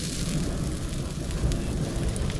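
Steady rushing noise with a low rumble, as of wind and surf on an open seaside shore, with a wood fire burning close to the microphone.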